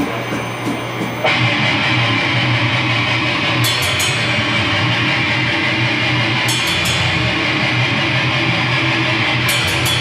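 A deathgrind band playing live: distorted guitar and bass with fast drumming start suddenly about a second in and run as a dense, loud wall of sound, with cymbal crashes about every three seconds.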